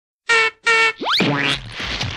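Cartoon sound effect: two short, loud honks of a clown's bulb horn, then a quick rising boing-like glide about a second in, followed by a voice saying "ha".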